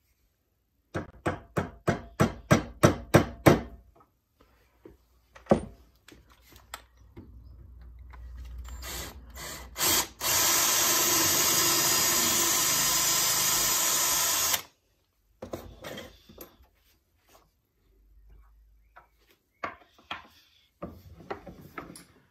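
Cordless drill boring a centre hole into the end of a wooden blank: it starts slowly, then runs steadily at full speed for about four seconds and stops suddenly. Before it comes a quick run of about ten taps, and a few handling knocks follow.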